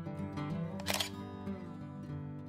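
A single-lens reflex camera's shutter fires once about a second in, a sharp click over background music.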